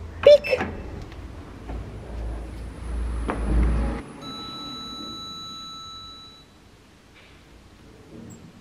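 A passenger lift being called: a short, loud, voice-like cry just after the call button is pressed, a low rumble, then a steady high electronic whine for about two seconds as the lift car comes to the floor.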